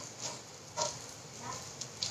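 A pause with faint background hiss and a few faint, short sounds, among them a brief faint tone a little under a second in and a small click near the end.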